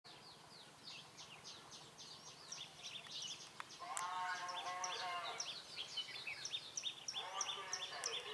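Songbirds chirping outdoors: a busy stream of quick, high, short chirps several times a second, growing louder about four seconds in, where a lower, fuller multi-toned call joins them for about a second; it returns near the end.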